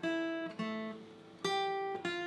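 Steel-string acoustic guitar playing a slow melody line as single plucked notes: three notes, each left to ring and fade before the next.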